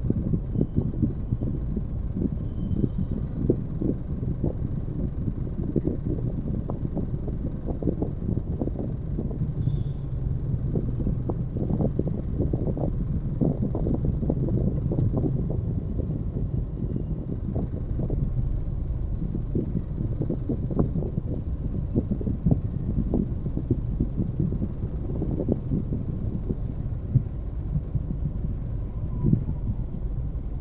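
Low, steady rumble of a car's engine and tyres heard from inside its cabin while it moves slowly in traffic, with frequent small knocks and rattles running through it.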